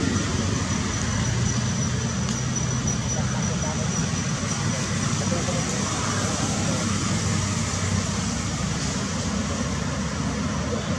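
Steady outdoor background noise: a low rumble like distant road traffic, with indistinct voices and a thin, steady high-pitched whine over it.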